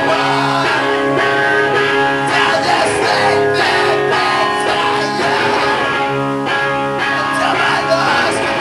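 A live rock band playing: electric guitars hold ringing chords that change about once a second, over drums with a few cymbal crashes.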